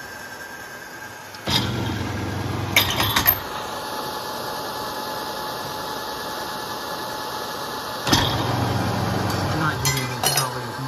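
Garage-door-opener motor of a homemade brass annealing machine hums for about two seconds as it turns the case wheel to its next position, ending in a few metallic clinks as the wheel stops. A steady torch hiss follows while a brass case spins in the flames, and the motor hums again near the end.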